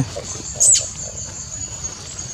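A short, very high-pitched animal squeak with a quick up-and-down sweep in pitch, about two-thirds of a second in, followed by a thin steady high whine.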